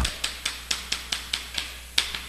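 Chalk writing on a chalkboard: a quick, uneven series of sharp taps and short scrapes as the strokes hit the board, about four or five a second.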